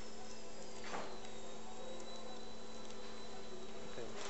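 Steady hum and hiss of operating-room surgical equipment. A thin high whine slides down slightly about a second in and then holds steady, and there is one brief click near one second.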